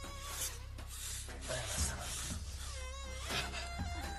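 A wounded man's wordless groans of pain as a bullet is being removed from his wound, over quiet background music.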